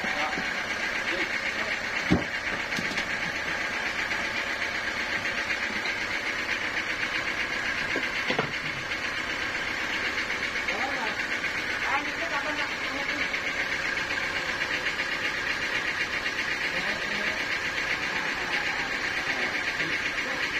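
Large teak logs being shifted by hand on a sawmill log deck, with one sharp wooden knock about two seconds in and a couple of lighter knocks later. A steady high-pitched drone runs underneath.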